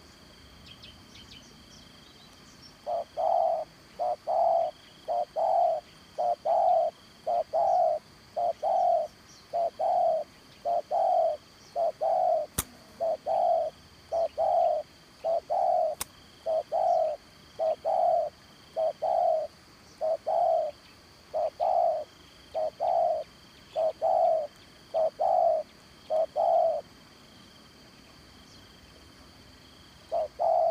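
A spotted dove cooing: a long, steady series of short, low coos from about three seconds in until near the end. A steady high insect drone runs underneath, with two faint clicks midway.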